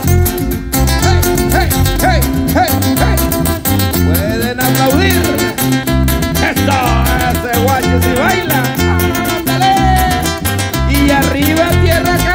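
A live tierra caliente band playing dance music loudly through a PA, with guitars over a steady, rhythmic bass line.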